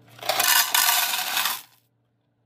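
Dry rotini pasta poured into a clear plastic canister: a dense, loud rattling clatter of hard pieces hitting the plastic and each other for about a second and a half, then dying away.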